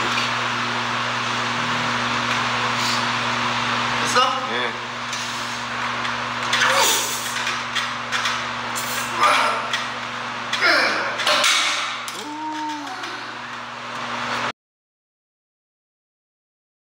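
A man straining, breathing hard and grunting as he lifts a 50 kg stack of weight plates on a loading pin by a strap, over a steady hum; the sound cuts off suddenly about three quarters of the way through.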